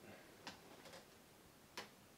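Near silence: quiet room tone with two faint, short clicks, one about half a second in and a slightly louder one near the end.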